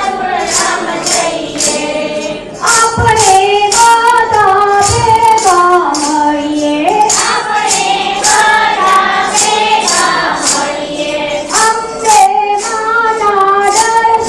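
Voices singing a Hindu devotional bhajan together, the melody moving in steps between held notes. A steady beat of jingling hand percussion runs underneath at about three strokes a second.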